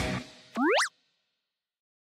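Guitar-backed outro music ending in the first moments, then a single short sound effect that sweeps quickly upward in pitch, about a third of a second long.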